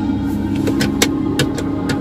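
Steady low hum inside a car's cabin with the engine running, with several light clicks and taps scattered through it.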